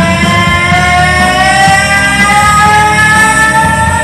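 Loud rock karaoke track over the bar's speakers: one long sustained note slowly bends upward in pitch over a steady bass and drum beat.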